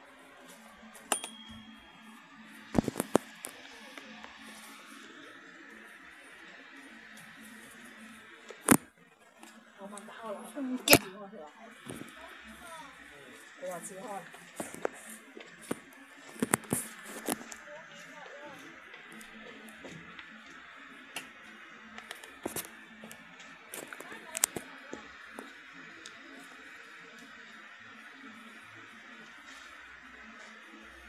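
Homemade mini ceiling fan's small motor humming steadily, with scattered sharp clicks and knocks from hands handling the fan and camera. The loudest knocks come about three, nine and eleven seconds in.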